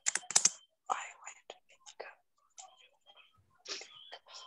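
Typing on a computer keyboard: a run of irregular key clicks, with faint, low speech in between.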